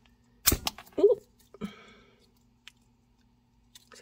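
Jewelry pliers being handled while working a jump ring: one sharp click about half a second in, then a brief vocal sound and a short rustle, over a faint steady hum.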